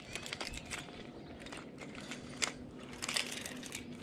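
Scattered light clicks and rustling of a fish and gear being handled on the boat during weighing, with a faint steady hum in the second half.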